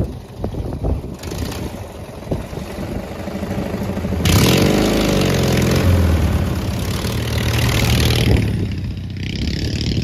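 Engine of a Murray garden tractor modified for off-roading, driving past: it grows louder as the tractor approaches, is loudest as it passes close about four to eight seconds in, then fades as it moves away.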